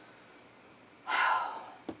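A woman's heavy audible breath, a sigh, about a second in, lasting about half a second. A short mouth click follows just before she speaks again.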